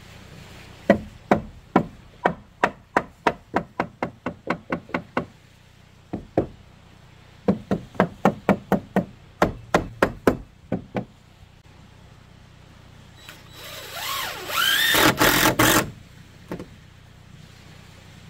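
A steel claw hammer driving nails into a lumber deck rail: two runs of sharp blows, each run speeding up as the nail goes home. Near the end there is a louder scraping rattle lasting about two seconds.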